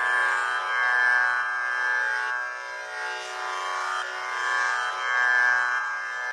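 Music: a sustained drone of held pitches, swelling and easing about once a second, with no melody or beat yet, opening a Carnatic devotional song.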